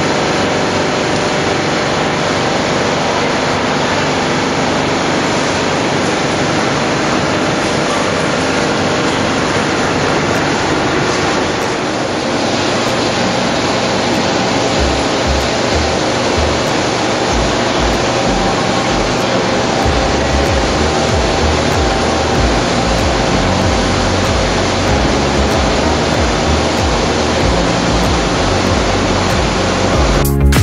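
Loud, steady roar of foundry machinery, a centrifugal casting machine spinning under a ladle of molten steel. A low, uneven thumping joins in about halfway through.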